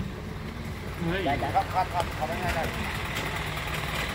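Diesel truck engine idling with a steady low rumble, with voices talking over it.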